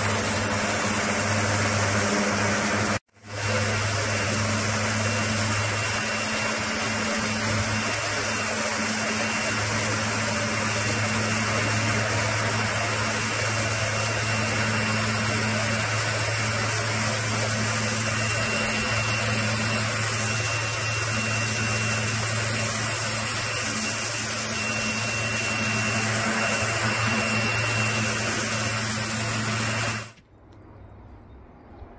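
Karcher K2 electric pressure washer running steadily with its dirt blaster rotary lance, the pump's steady hum under the loud hiss of the high-pressure jet hitting the paving slab. The sound drops out for a moment about three seconds in, then carries on unchanged.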